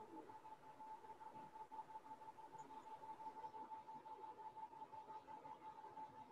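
Near silence with a faint, steady, single-pitched tone held throughout.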